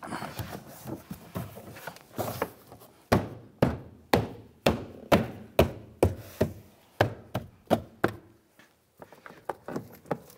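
Gloved hand smacking a plastic door trim panel about a dozen times, roughly two blows a second, snapping its push-pin clips into the door. Rubbing and shuffling of the panel comes before the blows.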